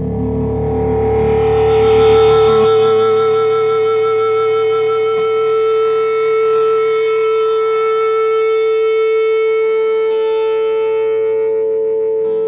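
Music: an electric guitar holding one long sustained note, with other held tones above it, and the low bass dropping out about two and a half seconds in.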